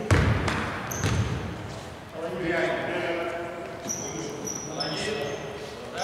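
A basketball bouncing loose on a hardwood gym floor, two bounces in the first second, echoing in a large hall.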